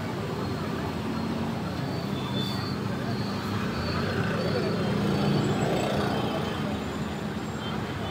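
Steady street traffic noise with a continuous low engine hum and faint indistinct voices in the background.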